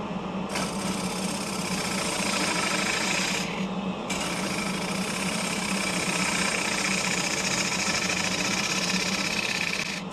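A turning gouge is cutting into a holly bowl blank spinning on a lathe, giving a steady cutting hiss over the hum of the lathe motor. The cut takes hold about half a second in and lets up briefly a few seconds later.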